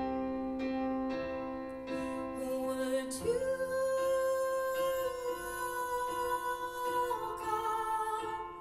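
Live song: a woman singing long held notes over electric keyboard and a backing band.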